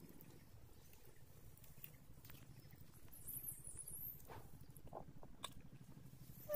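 Very quiet, with a few faint scattered clicks and rustles from puppies licking and mouthing the soil.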